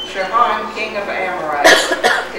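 Voices reading aloud, with one loud cough about one and a half seconds in.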